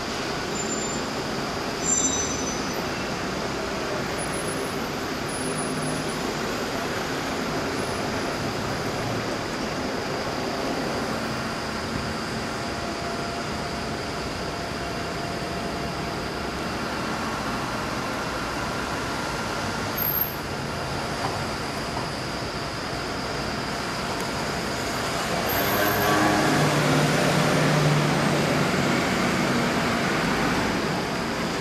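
City street traffic: a steady hum of passing buses and cars, with a couple of brief knocks. A heavier vehicle's engine grows louder for a few seconds near the end.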